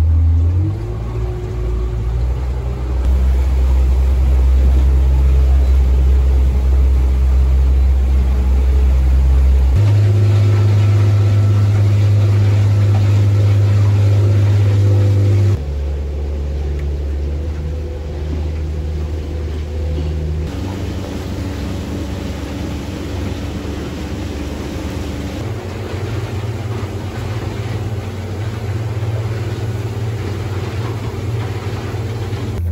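Twin Mercury outboard motors running under way: the pitch rises near the start, then a loud, steady low drone. The drone's pitch and level change abruptly several times.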